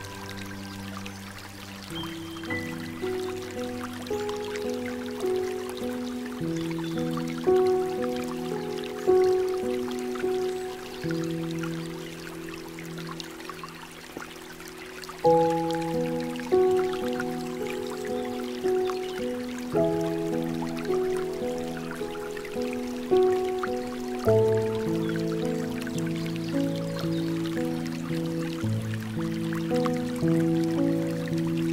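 Slow, soft piano music, notes struck about once a second, with a louder new chord about halfway through, over a faint trickle of running water.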